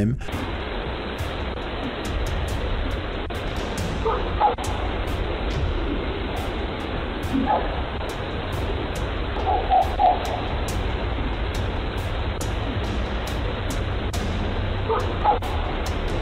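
A dog barking in short bursts over the steady hiss of a doorbell camera's microphone: a bark about four seconds in, another a few seconds later, a quick run of barks near the middle, and one more near the end.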